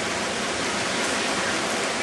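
Steady rush of flowing hot spring water among rocks.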